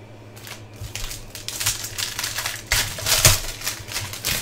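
A trading-card pack being opened and its cards handled: crinkling and rustling of the wrapper in a run of irregular bursts, growing louder toward the end.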